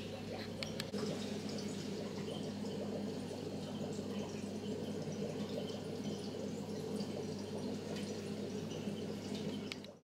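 Aquarium filters running: water trickling and splashing at the surface over a steady low hum, with a few faint clicks. The sound fades out at the very end.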